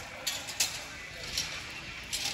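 Ambience of an indoor rodeo arena during a team-roping run: a steady murmur of distant voices and arena noise, with a few short sharp clicks, the loudest about half a second in.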